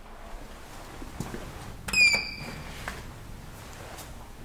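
Elevator hall call button being pressed: a click, then a short electronic acknowledgement beep about two seconds in, with a few faint clicks around it.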